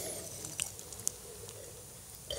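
Faint sipping and mouth sounds of wine being tasted close to a headset microphone, with a few small clicks.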